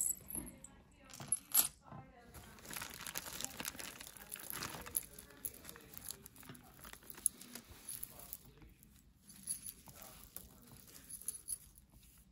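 Loose costume jewelry, metal chains, bangles and beads, clinking and rattling in small irregular clicks as hands sort through a pile of it.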